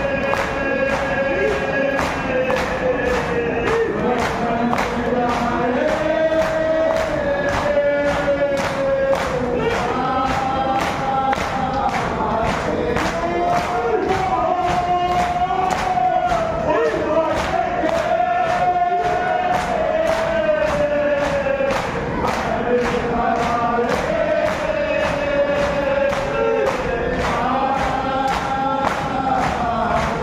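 A crowd of men chanting a marsiya lament together in long held lines, over steady, rhythmic matam: open-handed chest-beating about one and a half strikes a second.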